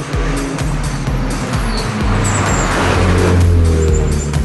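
Race car passing at speed on a hill climb. The engine and tyre noise swells to its loudest about three and a half seconds in, with electronic background music underneath.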